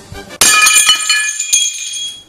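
A ceramic bowl smashing on a tile floor: a sudden crash about half a second in, then high ringing clinks of the pieces that die away over about a second.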